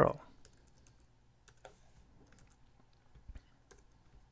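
Faint, scattered keystrokes on a computer keyboard as a line of code is typed.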